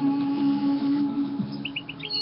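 Small bird chirping: three short, high chirps in quick succession near the end, over a steady low hum.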